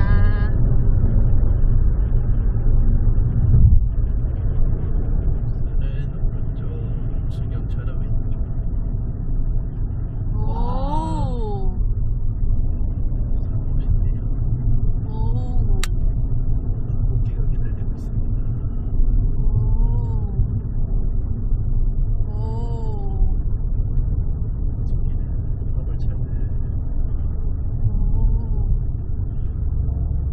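Steady low road and engine rumble heard inside a car cruising on a motorway. Several short pitched sounds, each rising then falling, come through over it: one about a third of the way in, then a few more spread through the rest.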